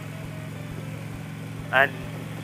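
Harley-Davidson touring motorcycle's V-twin engine running at a steady cruise, heard as a low, even hum.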